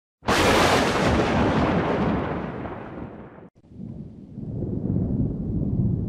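Thunder-like noise. A sudden loud crack rolls away over about three seconds and cuts off abruptly. A second, lower rumble then swells and fades.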